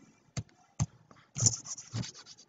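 A few sharp, separate clicks about half a second apart, then a quick cluster of clicks near the end: mouse clicks on an on-screen annotation toolbar while pen marks are erased.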